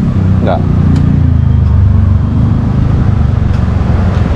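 Low engine rumble of a passing motor vehicle, swelling to its loudest about halfway through and then easing off as its pitch drops slightly.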